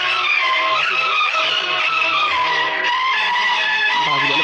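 Background music with long, held high tones that slowly bend in pitch, with faint voices underneath.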